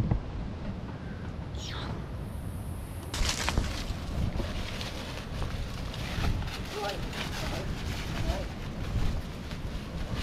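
Outdoor ambience with a steady wind rumble on the microphone, scattered rustling and scuffing steps on dry leaf litter, and faint voices partway through.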